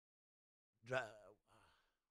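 Dead silence, then about a second in a man's drawn-out hesitant "uh" with falling pitch, followed by a short, faint breathy exhale like a sigh as he struggles to recall a line.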